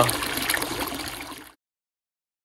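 Pumped water from a solar pool heater's outlet pipe pouring and splashing into the pool, a steady rushing that cuts off suddenly about one and a half seconds in.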